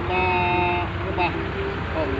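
A vehicle horn sounds once, a steady two-note blare of under a second near the start, over a low steady traffic rumble.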